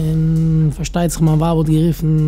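A man speaking haltingly, with a long drawn-out 'uhh' at the start before the words come.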